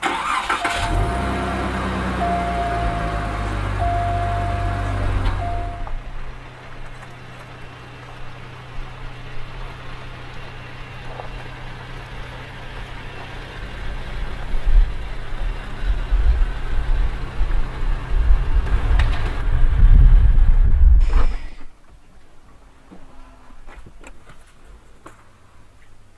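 A car engine starts and revs, with a repeated electronic chime over it, then settles to a steady idle. From about fourteen seconds in, a louder low engine rumble builds as the car drives, then cuts off abruptly about 21 seconds in.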